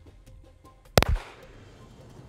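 A single pistol shot about a second in, with a short echo trailing off after it.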